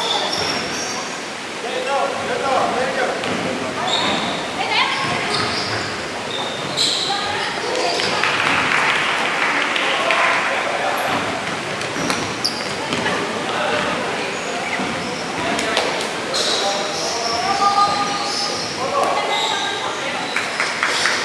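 Dodgeball game on a wooden sports-hall court: players shouting and calling out over one another, with balls bouncing and thudding on the floor now and then, all echoing in the large hall.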